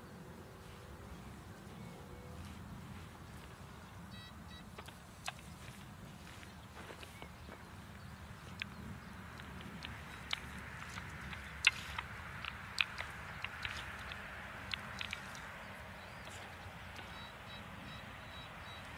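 Hand digging spade cutting into loose, clod-filled field soil: scattered scrapes and sharp clicks as the blade works the earth and knocks against clods, growing busier in the second half, over a low steady rumble.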